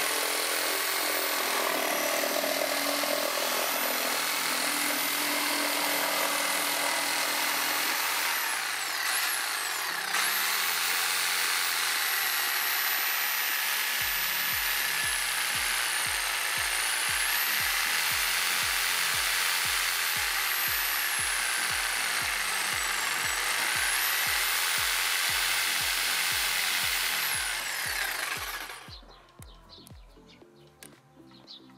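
A Hyundai HY-JS 100 750 W electric jigsaw cuts through a wooden board, its blade running steadily and loudly. The cutting stops shortly before the end. Background music with a steady beat joins about halfway through.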